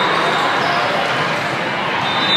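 Reverberant volleyball gym din during a rally: many voices from players and spectators blended with the sounds of play on the court.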